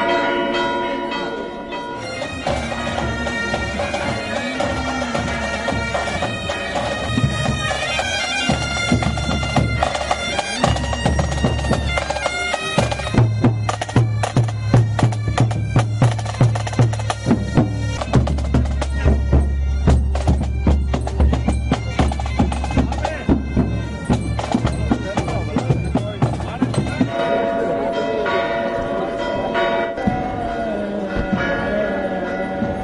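Marching pipe band playing: bagpipes with a steady drone and melody over snare and bass drums, the drumming heaviest through the middle of the stretch. Church bells ring briefly at the start.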